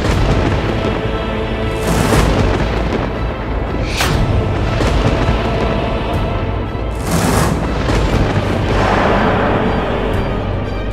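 Tense dramatic background score: a steady low drone with deep hits that swell up about every two to three seconds.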